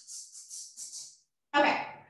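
A quick run of about five short, hissy, shaker-like percussion hits in the first second or so. Then a woman starts speaking near the end.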